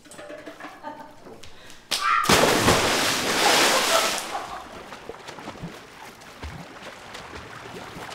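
A person jumping into a swimming pool: one loud splash about two seconds in that dies away over the next two seconds.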